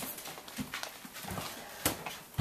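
Soft footsteps and handling rustle as a child walks, with a few dull thumps and one sharp click near the end.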